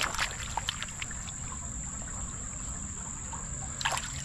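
Shallow creek water splashing and trickling as a gloved hand digs in the gravel of the creek bed, with a burst of splashes at the start and another just before the end as a handful of gravel is lifted out. A steady high-pitched insect drone runs underneath.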